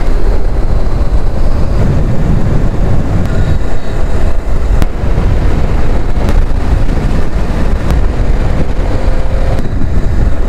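Loud, steady wind rumble on the microphone of a camera riding along on a motorcycle, mixed with road and engine noise, with a few sharp clicks through it.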